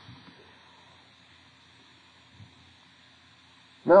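Faint, steady room tone and recording hiss, with one small brief sound about two and a half seconds in; a man's voice starts at the very end.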